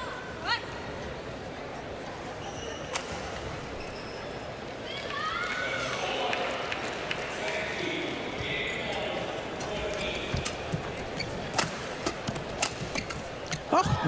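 Badminton rally: rackets striking the shuttlecock as sharp cracks, coming about twice a second in the last few seconds, with shoes squeaking on the court surface. Arena crowd murmur fills the background.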